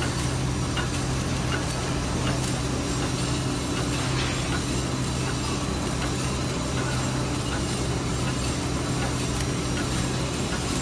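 Automatic flow-pack machine for disposable plastic cutlery sets running steadily: a continuous mechanical hum with a low steady tone and a few faint light clicks.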